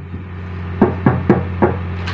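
Four knocks of a fist on a cabin door, about a quarter second apart, starting a little under a second in, over a steady low hum.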